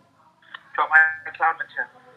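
Speech: a voice speaking briefly, starting about half a second in and stopping just before the end.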